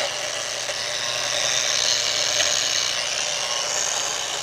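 Bosch GWX 125 S X-LOCK variable-speed angle grinder running free with no load at its lowest speed setting: a steady high-pitched whine over a low hum.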